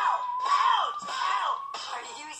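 Cartoon soundtrack: a man yelling and screaming in a string of cries that rise and fall in pitch, over a steady held tone that cuts off near the end.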